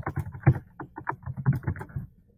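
Typing on a computer keyboard: a quick, uneven run of key clicks, about a dozen in two seconds.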